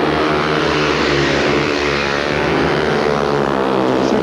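Several speedway motorcycles racing together, their 500 cc single-cylinder methanol-burning engines running hard as one dense, steady engine note made of several pitches that drift slowly.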